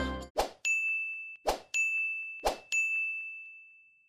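Three bell-like dings about a second apart: each is a sharp strike followed by a single ringing tone that fades away, with the last one dying out near the end.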